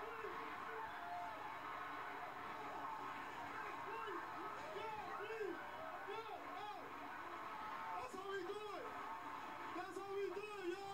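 Indistinct voices over steady stadium crowd noise from a television broadcast, heard through the TV's speaker.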